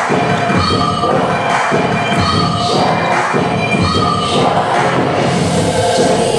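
Dance music playing loudly with a steady beat, while a group of people shout and cheer over it.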